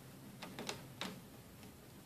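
A few faint, light clicks from a scratch awl's point working through nylon webbing against a plastic trash can lid, marking a hole.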